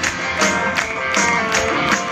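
Live rock band playing loud guitar music through a festival PA, recorded on a phone from inside the crowd, with a steady beat about two and a half times a second and the audience clapping along.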